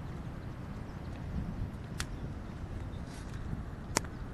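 Surf breaking along a rocky shore: a steady wash of waves, with a few sharp clicks about halfway through and near the end.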